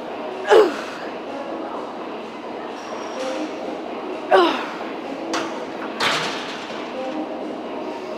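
A woman's effort grunts during barbell hip-thrust reps: two short, loud, falling vocal sounds, about half a second in and again near the middle. These are followed by two sharp knocks of the loaded equipment.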